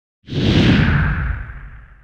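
Whoosh sound effect of a channel logo intro with a deep rumble. It comes in suddenly about a quarter second in, slides down in pitch and fades away over the next second and a half.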